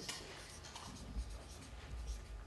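Faint scratching and rustling of paper in a quiet meeting room, with small scattered ticks and a low rumble underneath.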